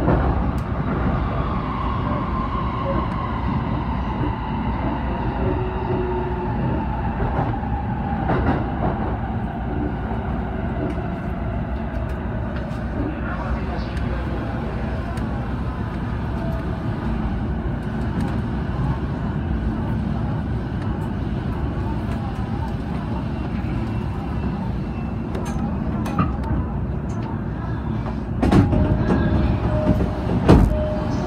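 E233-series electric train slowing to a stop: its motor whine falls steadily in pitch over the first several seconds and fades out over a steady rumble. Near the end a short louder burst comes in with a steady tone.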